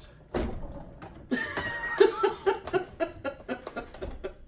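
A knock of hard plastic about a third of a second in, then laughter in short rapid bursts over clicks and knocks as the blender's plastic jar and lid are handled and pushed into place.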